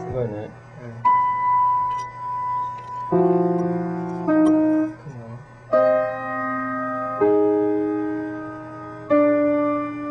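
Slow solo piano: a note or chord struck about every second or two, six times, each left to ring and fade before the next. A short voice sound comes right at the start.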